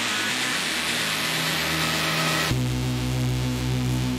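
Techno DJ mix in a breakdown: a hissing noise build over a held synth note cuts off sharply about two and a half seconds in, giving way to a deep sustained bass and synth chord, with no kick drum.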